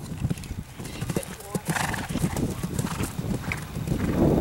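A horse's hoofbeats: a quick, irregular run of thuds, with a brief voice-like call about halfway through.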